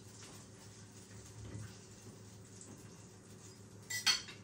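Quiet room tone with faint handling noise, then one sharp knock near the end as a plate is set down on the table.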